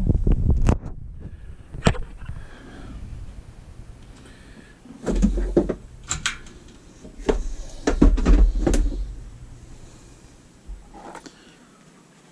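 Handling noise: a few sharp clicks in the first two seconds, then knocks and deep bumps in two bouts around five and eight seconds in, as the camera and the gel blocks are moved about and set down on a plastic tabletop.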